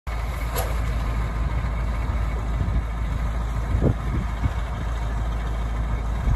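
Caterpillar diesel engine of an Ag-Chem Terra-Gator 1844 floater idling steadily while the machine stands still, a low, even rumble.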